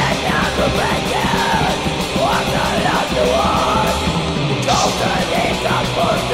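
Black/thrash metal song: harsh, yelled vocals over the loud, dense sound of the full band.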